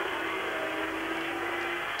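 Race motorcycle engines heard from the trackside through muffled, narrow-band old TV audio: a steady engine note that drops slightly and fades out near the end.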